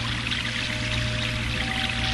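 Background music with a steady low drone and a few held tones, mixed with the hiss of running water.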